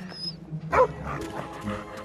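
A dog barking: one loud bark a little under a second in and a smaller one later, over background music.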